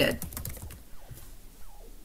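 Computer keyboard keys clicking a few times in the first half-second, then quiet room tone.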